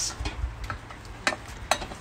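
Wooden spoon stirring softened leeks in a stainless steel saucepan, knocking against the pan in several short, sharp clicks.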